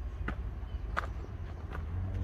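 Footsteps on a dirt woodland trail: three steps about two-thirds of a second apart, over a low steady rumble.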